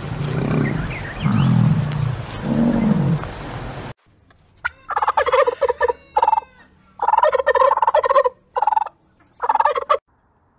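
An American bison gives three low bellows. About four seconds in, a flock of white domestic turkeys gobbles in five bursts, the longest lasting over a second.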